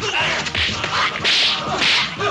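Dubbed kung fu fight sound effects: several quick, sharp whooshes of punches and kicks swishing through the air, the loudest two in the second half, mixed with the smack of blows.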